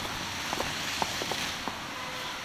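Footsteps in fresh snow on a sidewalk: a few small, soft crunches over a steady background hiss.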